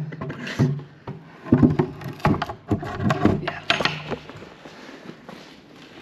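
Heavy metal floor hatch being lowered back into its frame: a run of knocks and clanks from about half a second to four seconds in, with a short laugh among them.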